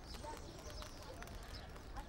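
Faint open-air ambience of a burning funeral pyre, with scattered light crackles and faint distant voices.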